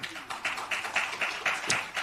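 A short spell of clapping from an audience: a dense patter of many hands that starts just after the beginning and dies away near the end.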